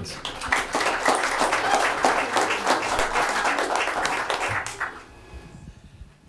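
Audience applauding: a dense spell of hand clapping that dies away about five seconds in.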